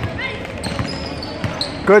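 A basketball being dribbled on a hardwood gym floor, a few dull bounces, over the steady background noise of a gym during a game.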